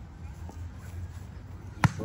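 A single sharp thump near the end, a soccer ball being kicked, over low wind rumble on the microphone and faint distant voices.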